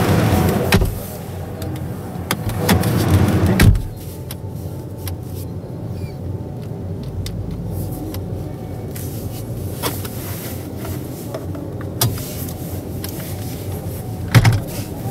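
Exhibition-hall background noise heard from inside a display car: loud for the first few seconds, then a sharp thump about four seconds in. After the thump it drops to a low, steady hum with a few small clicks.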